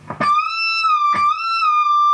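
Ibanez electric guitar playing a single high note at the 22nd fret of the high E string. It is picked, picked again about a second in with a slight rise in pitch that settles back, then held.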